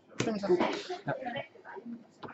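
A single sharp slap on the tabletop about a fifth of a second in, from a hand putting cards down, followed by quiet talk.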